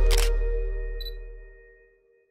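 Closing logo sting: a music chord fading out, with a camera-shutter click sound effect right at the start and a brief high electronic blip about a second in.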